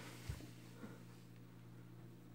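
Near silence: a faint steady low electrical hum, with one soft bump about a quarter second in.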